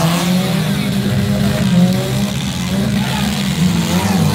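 Engines of several compact demolition derby cars running and revving together, a steady loud drone with pitch rising and falling as they accelerate.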